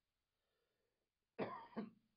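A person coughing, a quick double cough about one and a half seconds in, after a near-silent pause.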